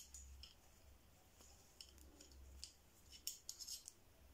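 Faint, scattered clicks and light scraping of metal knitting needles as stitches are worked in yarn, over a low steady hum.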